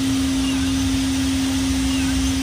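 Steady rush of air past a glider's cockpit canopy as it flies at speed, with a steady low tone sounding through it.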